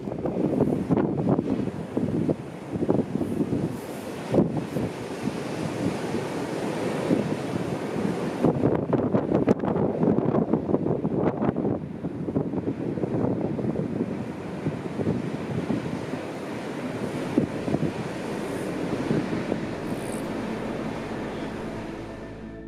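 Ocean surf: waves breaking and rushing, with wind, surging louder and softer in swells.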